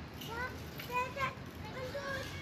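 A young child's voice making three faint, short, high-pitched calls.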